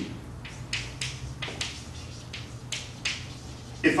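Chalk writing on a chalkboard: a string of irregular short taps and scratches as letters are written, over a steady low room hum.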